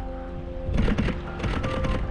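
Background music of steady held notes.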